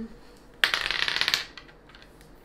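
A game die rattling: a burst of rapid clicking lasting under a second, starting about half a second in.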